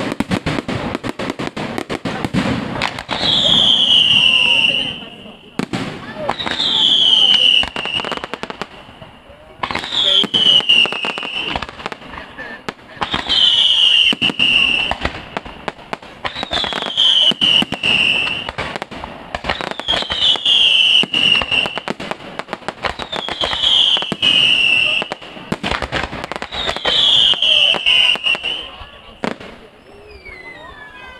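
Fireworks display going off: dense crackling and bangs throughout, with a loud high whistle that slides downward, repeating eight times about every three and a half seconds.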